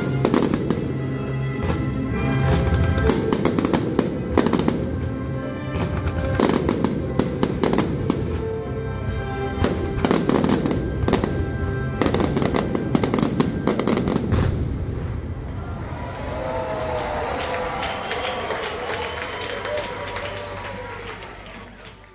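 Fireworks finale: a dense run of bangs and crackles from bursting aerial shells over music for about fifteen seconds. Then the bursts stop and the sound fades out near the end.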